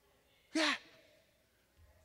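A man's voice saying a single short "yeah" about half a second in, with near silence around it.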